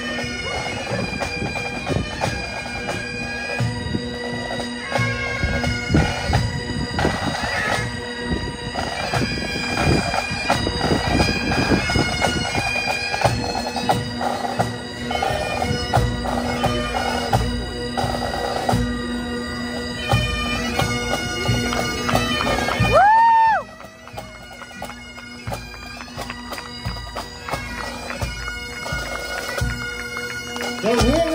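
Pipe band playing on the march: bagpipes sounding a tune over their steady drone, backed by snare and bass drums. About 23 seconds in, the pipes cut off with a brief wavering squeal as the tune ends, and the sound becomes much quieter.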